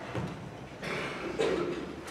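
A person coughing in a quiet hall, with a little rustling, about a second and a half in.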